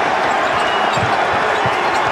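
Basketball bouncing on a hardwood court, a few dribbles about a second in, over the steady noise of an arena crowd.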